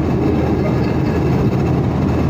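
A car driving at highway speed: steady engine and tyre rumble, mostly low-pitched and even throughout.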